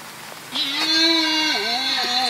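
Red deer stag calling: a long, steadily held call begins about half a second in, and a second call with a wavering pitch follows near the end.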